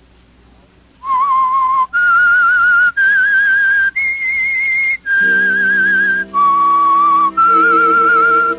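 A person whistling the radio show's slow signature theme: seven held notes with vibrato, each about a second long with short breaks between, starting about a second in. A sustained low orchestral chord joins under the whistling about halfway through.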